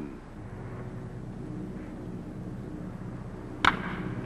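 A wooden baseball bat cracks once against a pitched ball about three and a half seconds in, putting it in play as a ground ball, over a steady low hum from old film sound.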